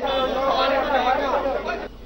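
Several people talking at once, voices overlapping, cutting off suddenly near the end.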